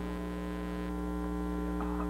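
Steady electrical mains hum with a stack of even overtones, carried on the recording during a pause in the public-address talk.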